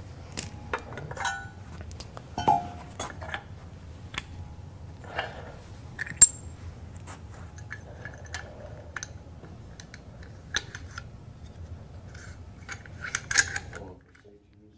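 Metal parts of a water-jetting hose drive clicking and clinking as it is taken apart by hand: scattered light clicks, one sharp ringing clink about six seconds in, and a quick cluster of clinks near the end.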